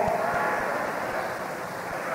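A pause in a man's speech in an old hall recording: the end of his voice dies away just after the start, leaving a steady low hiss.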